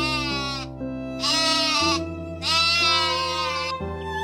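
Sheep bleating three times: a wavering bleat trailing off just after the start, a short one about a second in, and a longer one about two and a half seconds in, over background music.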